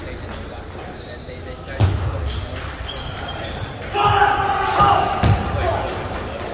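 Celluloid-type table tennis ball being struck by rubber-faced paddles and bouncing on the table in a rally: a string of sharp knocks from about two seconds in. A voice calls out about four seconds in, over a steady hall background of chatter from other tables.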